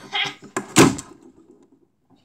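A single loud, sharp thump about three-quarters of a second in, just after a brief rush of breathy noise.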